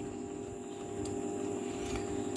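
Steady background hum made of several faint constant tones, with a faint click about a second in.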